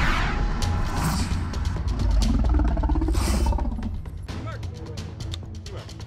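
Title-card sting: broad whooshes over a deep low rumble, fading a little after three seconds, then a quick run of sharp clicks near the end.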